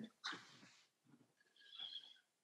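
Near silence on a video call: room tone, with a faint, brief high-pitched sound near the end.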